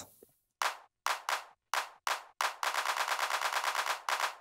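Electronic 808-style handclap sample played from a drum sequencer: a handful of separate claps over the first two and a half seconds, then a fast stuttering roll of about eight or nine claps a second as the loop length is shortened.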